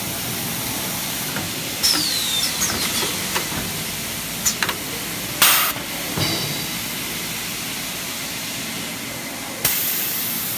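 Small 10-roll toilet paper packaging machine running: a steady mechanical noise with scattered clicks and knocks and a brief squeak about two seconds in. Loud hisses of air from its pneumatic valves come about five and a half seconds in and again near the end.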